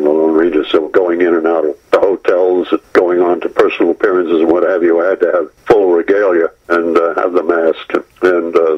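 Speech only: a man talking over a telephone line, the voice thin and narrow.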